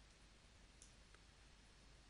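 Near silence, with a faint computer mouse click a little under a second in and another barely there just after.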